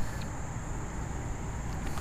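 Steady outdoor background rumble with a constant high-pitched whine above it, and no distinct event.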